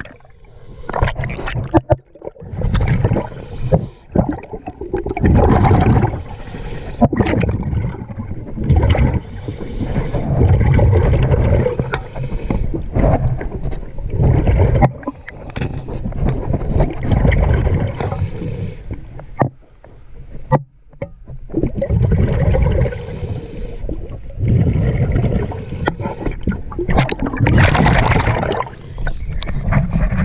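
A diver breathing through a regulator, heard underwater: bursts of exhaled bubbles every few seconds, with quieter gaps between breaths.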